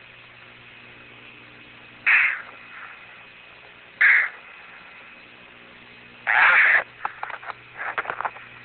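An Apollo astronaut's short, heavy breaths through the spacesuit radio link as he bends to lift a rock. The breaths come about two seconds apart, then a longer one near the end, followed by crackling clicks. A steady low electrical hum from the radio runs underneath.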